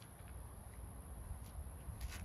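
A few faint scuffs of feet stepping on the ground during a line-dance step, over a steady low rumble and a thin high-pitched hiss.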